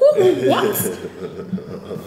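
A person's voice chuckling and exclaiming in conversation, loudest in the first second, then dropping to quieter murmurs.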